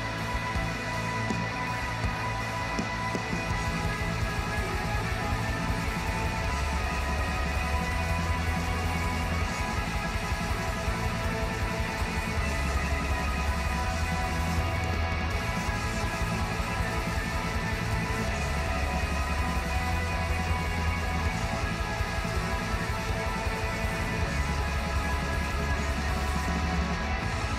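Instrumental passage of a blackgaze (black metal and shoegaze) song: a dense, heavily compressed wall of distorted guitars over fast drumming, with the bass notes changing every couple of seconds. The song sounds bright and uplifting.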